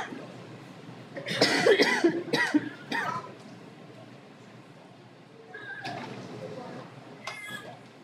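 A woman's voice close to a podium microphone: a few short, loud utterances between one and three seconds in, then quieter talk near the end.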